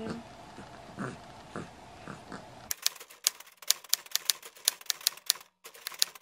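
Typewriter key-clack sound effect: an irregular run of sharp clicks, about three or four a second, starting a little under three seconds in over dead silence. Before it there is only faint room sound with a few soft, small noises.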